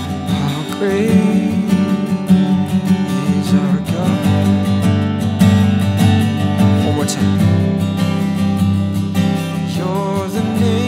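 An acoustic guitar strummed steadily, with a man singing a slow worship song over it; his voice comes in briefly about a second in and again near the end.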